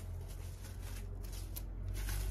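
Plastic cling film crinkling and rustling in irregular crackles as it is folded and pressed around a log of cookie dough, over a steady low hum.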